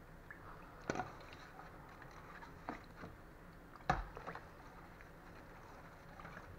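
A metal spoon stirring watermelon chunks in water in a stainless steel bowl: a few light clinks of the spoon against the bowl, the sharpest just before four seconds in, over faint stirring.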